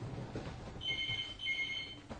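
Home telephone ringing with the British double-ring pattern: one ring-ring about a second in, a high steady electronic tone in two short bursts close together.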